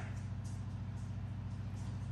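A steady low hum with no speech over it, holding an even level throughout.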